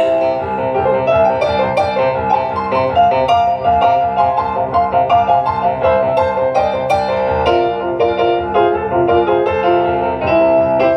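Stage piano played live as an instrumental passage, a busy run of quick notes and chords with some notes held.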